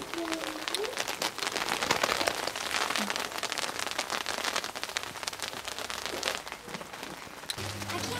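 Rain falling on an umbrella close above the microphone: a dense, irregular run of small ticks from the drops.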